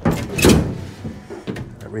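A plywood floor board being slid and set down into place in an aluminum jon boat: wood scraping against the neighbouring boards and the hull, loudest about half a second in, followed by a few lighter knocks.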